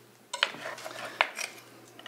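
Carving knife and fork clicking on a wooden cutting board: two sharp clicks, one about a third of a second in and a sharper one just after a second in, with faint handling noise between.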